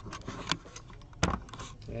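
A few sharp clicks and light rattling from objects being handled on a desk, the strongest click about a second and a quarter in.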